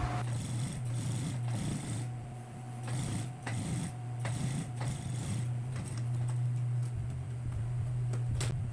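Industrial sewing machine running while a seam is stitched along the piping line. Its motor gives a steady low hum, with light clicks every half second or so.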